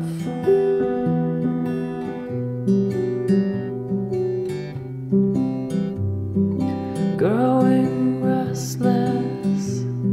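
Acoustic guitar playing an instrumental passage of a folk song: a sequence of plucked, ringing notes over a moving bass line, with a brief rising glide about seven seconds in.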